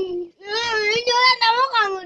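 A high-pitched cartoon character's voice speaking Kikuyu in a drawn-out, sing-song line, after a short syllable at the start.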